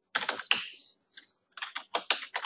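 Typing on a computer keyboard: a quick run of keystrokes, a short pause, then another run of keystrokes.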